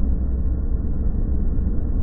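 Steady low rumble of wind and engine from a Honda CBR600RR motorcycle cruising along the road, heard muffled with all the treble cut away.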